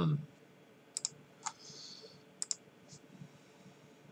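A handful of sharp, light clicks from working a computer, two of them coming in quick pairs, with a short soft hiss in the middle.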